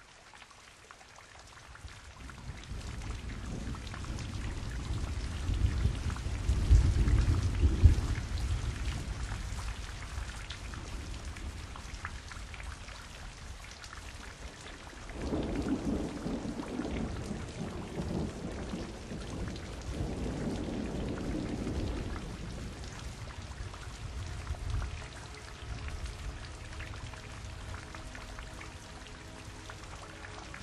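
Steady rain with rolling thunder. The loudest roll peaks about seven seconds in and more rolls follow in the middle. Soft held music tones come in near the end.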